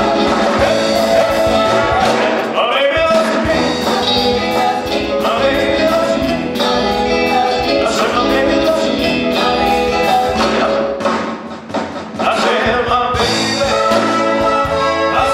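Live big band with saxophones and trombones playing a dance number. The band drops back briefly about eleven seconds in, then comes back in at full strength.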